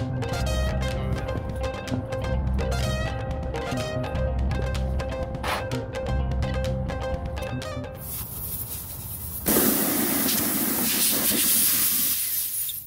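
Background music with a steady beat, stopping about eight seconds in. About a second and a half later a loud steady hiss starts suddenly: air escaping through the puncture in a car tire's tread as the plug tool is worked in the hole.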